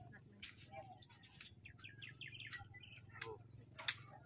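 Faint bird chirps: a quick run of short chirps through the middle, over a low steady background noise.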